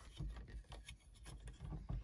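Fingers handling the plastic switch housing and its wiring connector: faint, irregular small clicks and rubbing.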